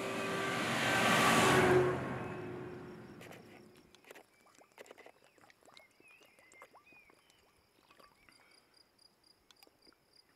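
A car passing on the road, swelling to its loudest about a second and a half in and fading away by about four seconds. After it, faint clicks from a plastic water bottle being handled and drunk from, over a regular high chirping of crickets.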